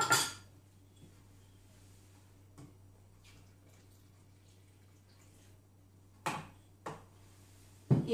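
Guinness stout poured softly from a glass jug into a food processor's steel mixing bowl, then two sharp clinks of the glass jug about half a second apart near the end.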